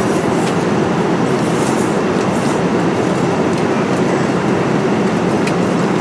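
Steady rushing cabin noise of a jet airliner in flight, the drone of engines and airflow heard from an economy seat.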